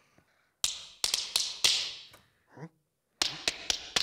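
Tap shoes clicking on a hard floor in a tap dance: a quick run of sharp clicks starting about half a second in, then a second run after about three seconds.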